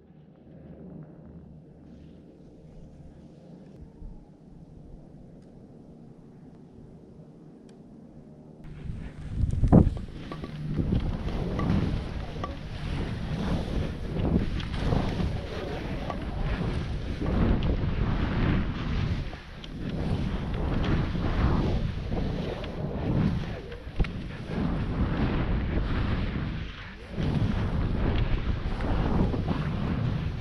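Wind rushing over the microphone of a skier's camera and skis hissing through snow during a descent. It starts suddenly about nine seconds in and surges up and down in waves. Before that there is only a faint low hum.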